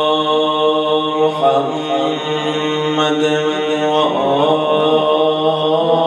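A man chanting a rawza mourning recitation into a microphone in long, held notes, the pitch shifting a little over a second in and again about four seconds in.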